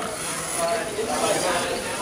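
Background chatter of spectators' voices in a room, over a steady hiss.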